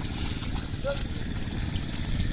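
Pair of oxen dragging a wooden ladder leveller through a flooded, muddy paddy: steady sloshing and squelching of water and mud under hooves and plank. About a second in there is a single short driving call of "haydi" to the oxen.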